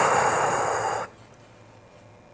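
A loud, noisy breath from a man who has been crying, stopping about a second in.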